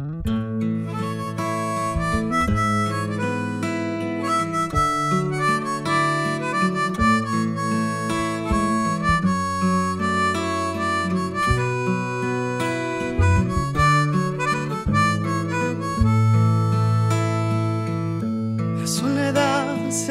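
Band playing the instrumental intro of a pop-folk ballad, with electric bass and guitar under a sustained melody, starting abruptly at the beginning. A male voice comes in singing right at the end.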